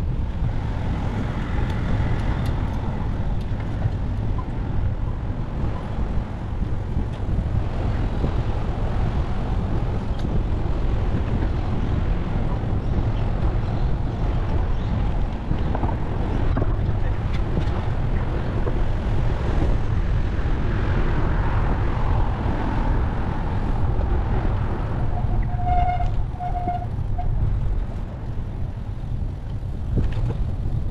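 Steady city traffic noise with a low rumble of wind and road on a bicycle-mounted camera. A few short, high beeps sound a little before the end.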